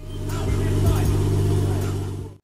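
Nissan Skyline R32 GT-R's freshly built twin-turbo RB26DETT straight-six running with a steady low drone, with voices over it.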